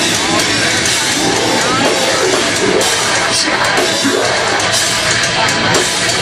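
A metalcore band playing live at full volume: distorted electric guitars and a drum kit in a dense, unbroken wall of sound.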